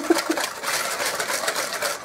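Wire whisk beating egg yolks and sugar in a bowl: quick, steady strokes, the wires clicking and scraping against the bowl in a rapid, even rhythm as the mixture turns light and creamy.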